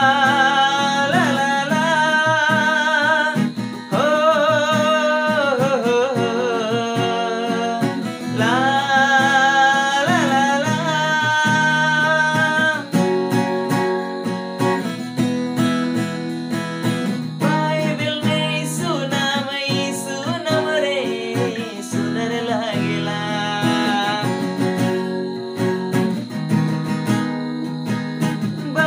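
A man singing a Sadri Christian song with vibrato, accompanied by a strummed steel-string acoustic guitar. About halfway through, the singing mostly drops away and the guitar carries on, with only occasional sung lines.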